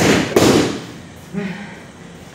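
Boxing gloves striking focus mitts: two punches in quick succession near the start, each a sharp smack with echo. A short vocal sound follows about a second and a half in.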